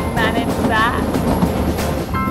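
Narrow-gauge toy train running, heard from the open doorway of a carriage, with two short vocal sounds from a woman within the first second, over background music.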